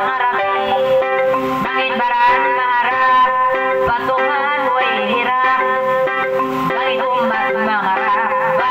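A woman singing a kissa, a sung narrative, in a wavering, ornamented melodic line into a microphone. Under it, an electronic arranger keyboard holds steady drone notes.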